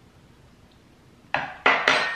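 Metal fork clinking a couple of times against dishware, about a second and a half in, with a brief ring after.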